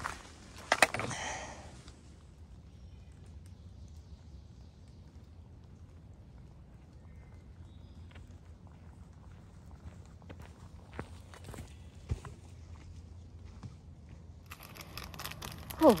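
A hiker's footsteps and trekking-pole taps on a rocky, leaf-strewn forest trail: faint, scattered clicks and crunches that grow louder near the end. There is a sharp knock about a second in.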